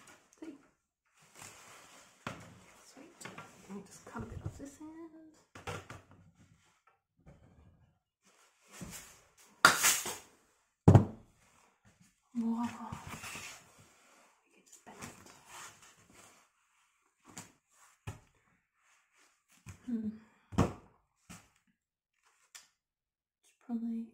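Scattered rustling and knocking from handling foam pool noodles and wire, with two sharp knocks about ten and eleven seconds in; brief low bits of voice now and then.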